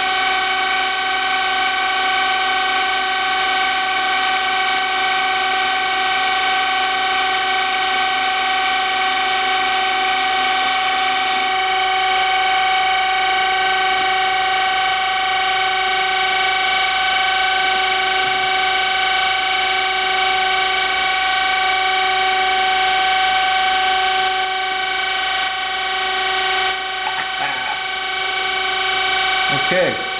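Surface grinder's spinning wheel whining steadily with a high grinding hiss, while a Makita cordless drill turns the part in a Harig Grind-all fixture for cylindrical grinding of the edge-finder diameter. About eleven seconds in, one lower tone drops out and the hiss eases slightly, but the whine carries on.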